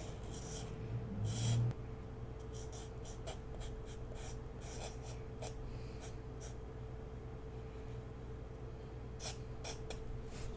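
Felt-tip marker drawing on paper: many short scratchy strokes as lines are inked, with a brief louder rustle about a second and a half in, over a steady low hum.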